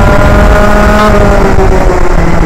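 Rotax Max 125 two-stroke kart engine running hard at high revs, its pitch falling in the second half as the driver comes off the throttle for a corner, over heavy wind rush on the helmet microphone.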